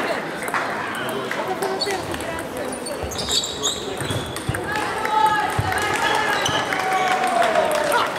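Table tennis balls clicking off bats and tables, many short sharp knocks coming from several tables in play, over a steady background of indistinct voices in the hall.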